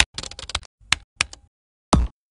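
A quick, uneven run of short, sharp clicks and taps, broken by moments of dead silence, with a louder hit at the start and another at the end.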